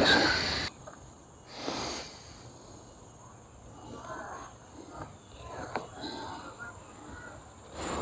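Soft rustling and brushing of a hand moving over the surface of a large leaf, with a brief louder swish at the very start, over a steady high-pitched insect drone.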